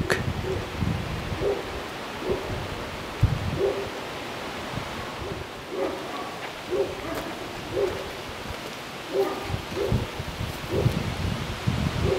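Strong wind buffeting the microphone in gusts, with rustling leaves.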